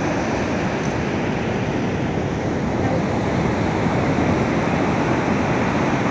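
Ocean surf breaking on a sandy beach: a steady rushing noise with no single wave standing out.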